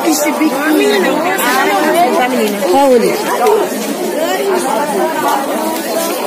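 Chatter of many people talking at once, overlapping voices with no single speaker standing out, from a busy street market crowd.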